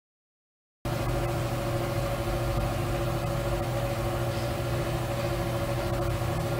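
A steady mechanical running sound with a constant low hum and a few unchanging tones, like an engine idling or a workshop machine running. It starts abruptly about a second in and cuts off sharply near the end.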